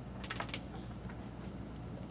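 A quick run of light clicks, several within about half a second near the start, over a steady low room hum.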